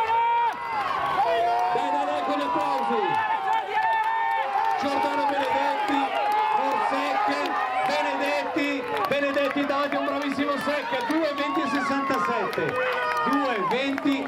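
Trackside spectators shouting and cheering runners on toward the finish of a middle-distance race, many voices overlapping without a break.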